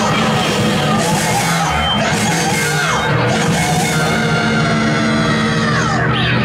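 A live rock band playing loudly: electric guitars and drums with repeated cymbal crashes, with a singer yelling into a microphone. Several notes slide downward about two and three seconds in.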